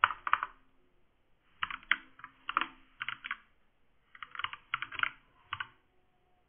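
Computer keyboard typing: short bursts of quick keystrokes separated by brief pauses.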